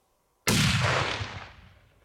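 A single hunting rifle shot about half a second in, its report rolling away in echoes that fade out over about a second and a half.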